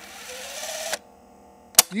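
Tape-rewind sound effect: a hissing whir with a faintly rising tone for about a second, stopping abruptly, followed by a single sharp click.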